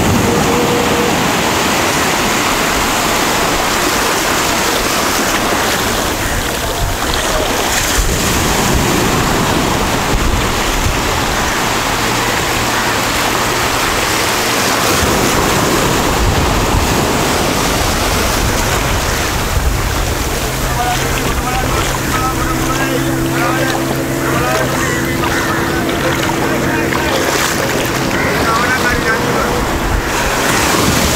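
Surf breaking and washing up a sandy beach, with wind on the microphone. A steady low engine hum comes in for a few seconds around the middle and again through the last third.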